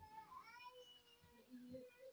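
A cat meowing faintly, drawn-out calls that glide in pitch.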